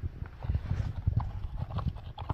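A Great Pyrenees puppy chewing a dried chew treat close by: a run of irregular low knocks and clicks from its jaws working on the treat.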